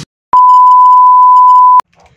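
A single loud, steady electronic beep tone, one unchanging high pitch lasting about a second and a half. It starts abruptly after a moment of silence and cuts off suddenly.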